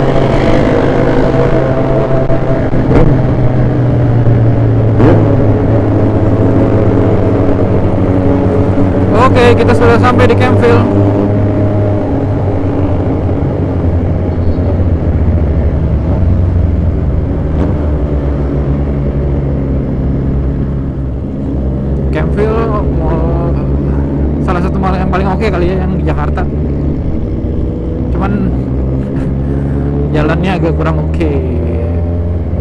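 Motorcycle engine running under way at road speed, heard from the rider's seat with wind noise, the engine note holding steady with small changes in pitch.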